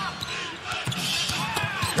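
Basketball dribbled on a hardwood court: several quick bounces, mostly in the second half, over steady crowd noise.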